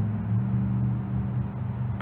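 Steady low hum with a few held tones that shift slightly in pitch, from the phacoemulsification machine running in irrigation/aspiration mode while the tip holds the cortex in occlusion.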